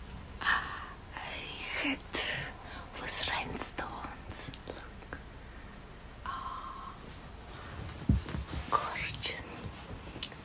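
A woman whispering in short, breathy phrases broken by pauses.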